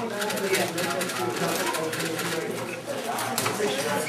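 Indistinct chatter of many voices in a large room, with the quick clicking of a 4x4 Rubik's cube being turned during a speed solve.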